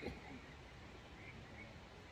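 A parrot gives a brief falling squawk at the very start, the tail of a burst of calls. After it there is only a faint outdoor background with a few faint, distant bird chirps.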